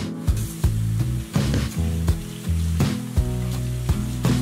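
Background music of plucked notes with a steady beat, over the hiss of tap water running and splashing into a soapy stainless-steel kitchen sink.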